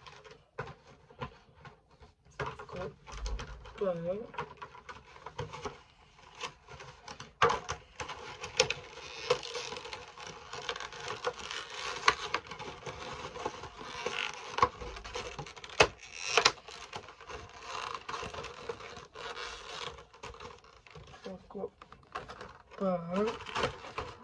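Cardboard and plastic packaging of a Funko Pop vinyl figure being handled, with a dense crinkling rustle and many sharp clicks.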